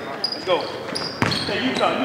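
Basketball bouncing on a gym's hardwood floor, with a sharp knock just over a second in. Voices of players and spectators echo around it.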